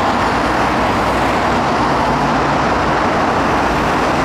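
A loud, steady rushing noise with a low rumble underneath, unchanging throughout.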